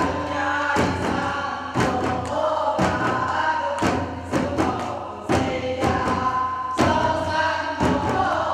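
Group of women and children singing a Korean folk song in unison while striking buk barrel drums, the drum beats falling mostly about once a second.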